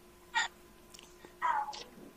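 Two brief, faint vocal sounds from a man over a faint steady hum: a quick falling sound about half a second in, then a short voiced syllable about a second and a half in.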